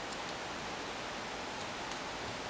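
Steady background hiss with faint crinkles of small origami paper being pinched and opened by fingertips.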